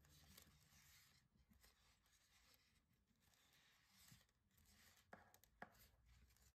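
Near silence: a faint hiss with light rustling and two soft clicks near the end.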